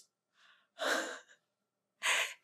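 A woman's single breathy sigh about a second in, preceded by a faint intake of breath, in a silent room: an amazed reaction to the singing she has just stopped.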